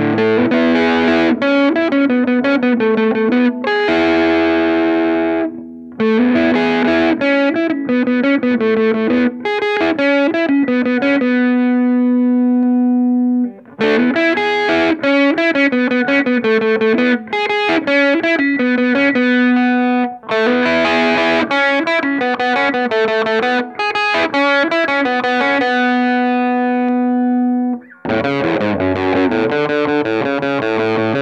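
Music Man Stingray RS electric guitar played through overdrive, in picked riffs and strummed chords. About halfway through, a held chord is left ringing out, and there are short breaks between phrases.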